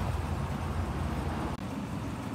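Steady low background rumble with hiss, broken by a brief dropout about one and a half seconds in, after which the rumble is fainter.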